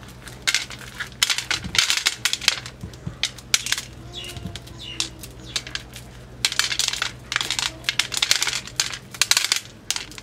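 Maize kernels being shelled off the cob by hand: bursts of rapid dry crackling as the thumbs push rows of kernels loose, with kernels clicking into a steel plate. Quieter for a couple of seconds around the middle.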